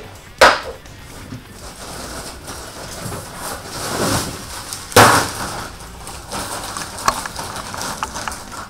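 A cardboard bucket set down on a desk with a sharp knock. About five seconds in comes a louder crunching clatter as a bag of ice cubes is dropped onto the desk, followed by the plastic bag rustling as it is handled.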